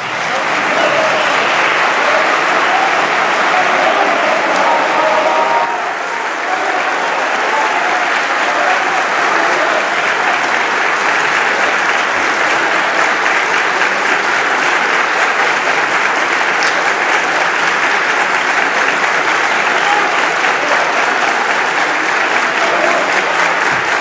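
Parliament members applauding steadily at the close of a speech, a dense sustained clapping that dips slightly about six seconds in and then carries on.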